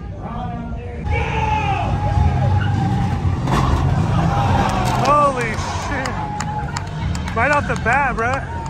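Car engines running with a low rumble, under loud shouting voices whose pitch rises and falls. Near the end comes a burst of fast, wavering high calls.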